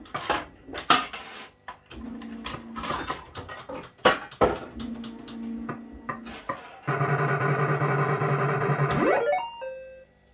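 JPM Hot Pot Deluxe fruit machine from 1987 being played: the reels spin and stop with sharp clicks, and its electronic sound chip plays short tones. About seven seconds in, a loud buzzy electronic chord sounds for two seconds, then ends in a rising sweep and a falling run of beeps.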